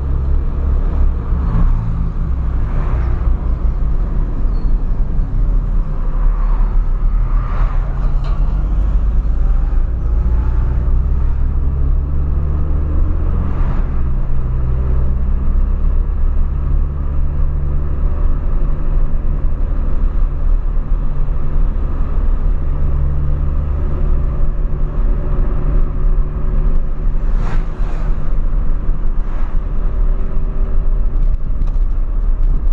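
Inside the cabin of a 2003 Ford Fiesta Supercharged under way: its supercharged 1.0-litre engine running, with road rumble, the engine note rising and falling with speed. A few brief knocks come from the road, one near the middle and one near the end.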